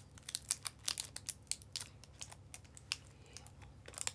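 Small crinkly snack wrapper handled close to the microphone, giving a quiet, irregular run of sharp little crackles and clicks.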